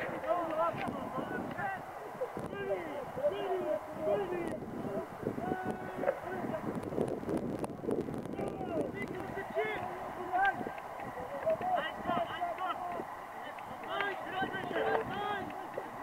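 Many voices of rugby players and spectators shouting and calling at a distance during a scrum, overlapping in short calls throughout.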